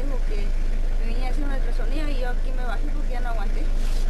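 A woman's voice speaking over a loud, steady low hum and background noise.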